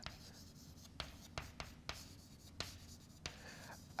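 Chalk writing on a blackboard: faint scratching with about six short, sharp taps as the chalk strikes the board.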